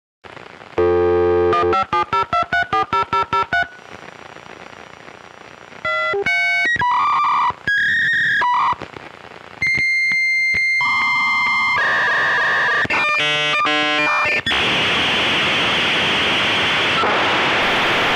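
Electronic sound collage: a buzzy synthesized tone about a second in, then a run of rapid pulsing beeps, separate electronic beeps and a steady high tone, ending in several seconds of loud hissing noise.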